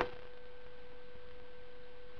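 A faint, steady, high hum (one even tone) over low hiss: background electrical hum with no distinct sound from the paper being rolled.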